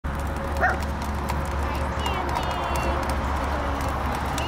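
Lo-fi dictaphone recording with a steady low hum and scattered clicks, and a short animal cry about half a second in.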